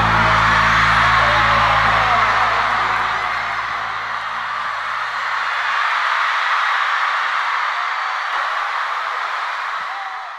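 Concert crowd cheering and screaming after a song ends, over the band's last held low chord, which fades out about six seconds in.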